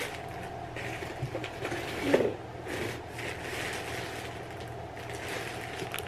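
Plastic clothing packaging rustling and crinkling as it is handled, in several irregular bursts, with a louder bump about two seconds in.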